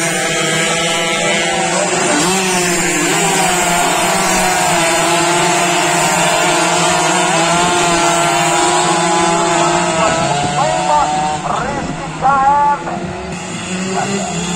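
Two-stroke Yamaha F1ZR race motorcycles running at high revs, their engine pitch rising and falling as they accelerate and pass. A short, louder burst of wavering engine tone comes near the end.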